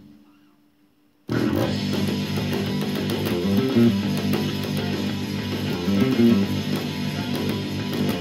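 Electric bass played fingerstyle along with a full rock band recording. After a brief near-silent gap, the band comes in all at once about a second in, with the bass notes moving underneath.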